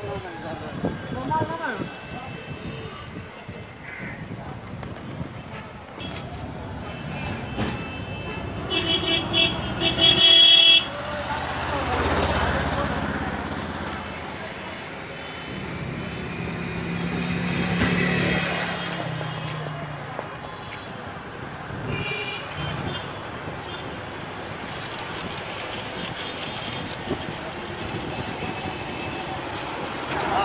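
Road traffic: a vehicle horn honks in several short toots about nine seconds in, ending in one longer, loud blast, with another brief toot later on. Vehicles pass by in between, their noise swelling and fading twice.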